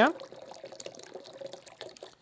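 Pineapple juice pouring from a carton into a blender jar holding coconut cream: a thin, steady stream of liquid that stops near the end.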